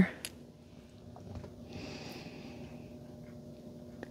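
A quiet pause with a faint steady room hum and a soft, short hiss about halfway through, like a breath or a light handling noise.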